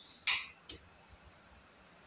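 The side-lever cocking action of a PCP air rifle being worked: one short, sharp metallic slide, then a faint click about half a second later.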